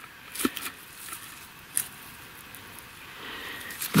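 Loose soil and broken rock scraping and shifting as a mine dump is dug by hand with a rock pick, with a couple of short knocks, one about half a second in and another just under two seconds in.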